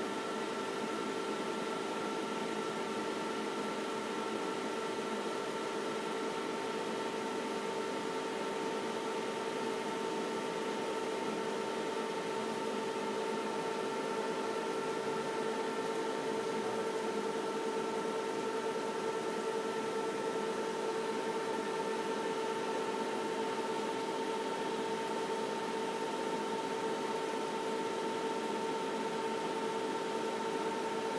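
Steady machine hum with several held tones over an even hiss, unchanging throughout.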